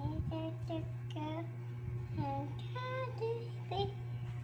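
A young girl singing to herself in short notes that glide up and down, over a steady low hum.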